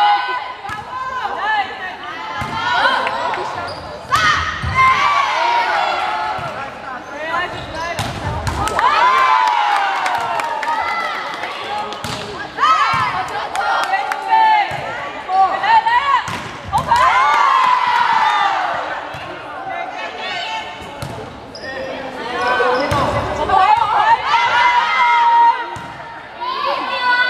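Girls' voices shouting and calling over one another during volleyball rallies in a large sports hall, with sharp volleyball hits and ball thuds every few seconds.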